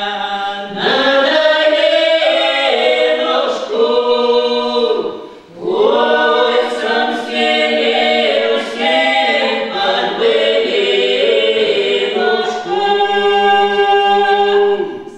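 Small vocal ensemble singing a Russian Cossack folk song a cappella in several parts, with women's voices carrying the melody. The singing breaks briefly for breath about five and a half seconds in, then the next phrase starts.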